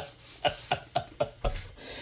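A man laughing softly and breathily, a string of short huffs about four a second.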